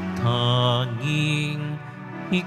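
Slow church music of long held notes that change pitch about once a second, sung or played as the communion hymn of the Mass.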